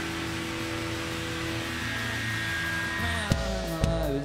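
Live band on stage holding a steady drone of sustained electronic notes over a hiss, then drum hits and sliding bass notes come in about three seconds in as a song starts.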